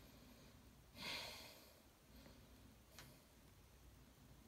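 A person taking one audible breath about a second in, catching their breath; otherwise near silence, with a faint click about three seconds in.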